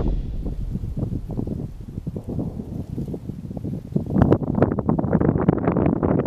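Outdoor field audio dominated by wind buffeting the microphone: a low rumble with irregular crackling that grows louder about four seconds in.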